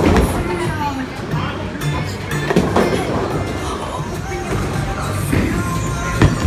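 Bowling alley background: music playing and people's voices over the low rumble of a bowling ball rolling down a lane.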